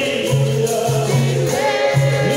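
Capoeira Angola roda music: a chorus of voices singing over a steady rhythm of percussion that includes a pandeiro.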